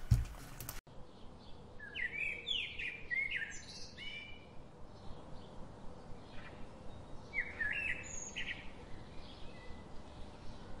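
Small birds chirping in short, quick calls that come in two bursts, a few seconds in and again near the end, over a faint steady background hiss.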